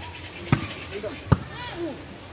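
A volleyball struck twice during a rally, two sharp slaps under a second apart, followed by a brief shout from a player.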